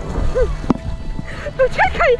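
A voice calling out briefly, with more calls near the end, over background music.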